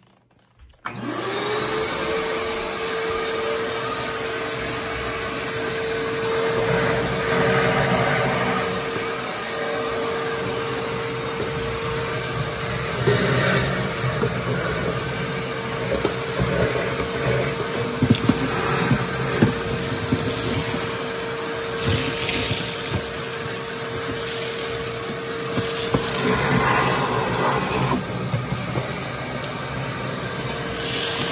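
Shop-Vac wet/dry vacuum switched on about a second in, its motor spinning up to a steady whine. It then runs continuously while sucking ash out of a pellet stove, with occasional sharp clicks and louder surges as debris is drawn up the hose.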